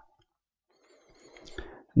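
A pause in a man's speech: silence for about a second, then a faint, brief breathy sound, like an in-breath, just before his voice resumes at the very end.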